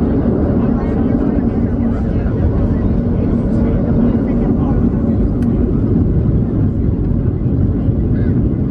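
Cabin noise of a Boeing 737-700 on its takeoff roll: the CFM56-7B engines at takeoff thrust and a loud, steady low rumble heard from inside the cabin.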